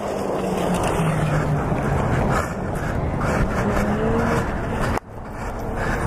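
Loud, rushing wind and road noise on a motorcycle helmet camera as a downed rider slides along the highway after a crash, with a faint engine hum gliding up and down underneath. It cuts off suddenly about five seconds in, and a quieter outdoor noise begins.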